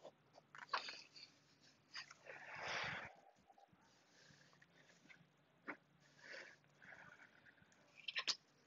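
A person coming down from a forearm balance onto a yoga mat: a sharp thump under a second in, soft rustling of the body on the mat, and a breathy exhale that swells for about half a second around the third second.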